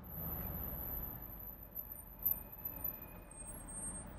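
Cabin noise of a Mercedes-AMG G63 on the move: a steady low rumble from its twin-turbo V8 and the road, heard from inside the car. A couple of brief knocks come a little past halfway.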